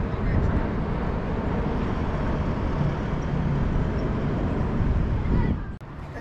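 Steady low rumble of wind buffeting the microphone and road noise from riding an electric Onewheel board along the street. It cuts off abruptly near the end.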